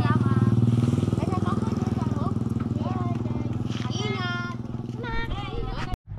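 A vehicle engine idling steadily, a low, even running with a rapid pulse.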